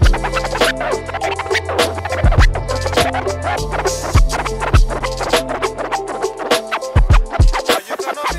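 A DJ scratching a vinyl record on a turntable, quick back-and-forth strokes cut over a playing beat with deep bass.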